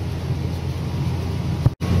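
Tractor engine droning steadily, heard inside the cab, while it pulls an anhydrous ammonia applicator through the field. Near the end there is a short click and the sound cuts out completely for a split second.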